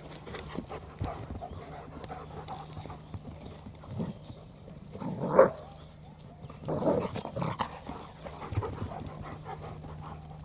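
Dogs vocalizing during rough play, with a short loud bark-like call about halfway through and a longer spell of growling a second or two later.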